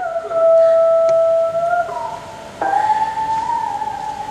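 Solo instrumental accompaniment in long held notes with slight pitch bends: one note held for about a second and a half, then a higher, slightly wavering note.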